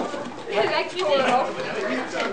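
Several people talking over one another: overlapping chatter with no clear words.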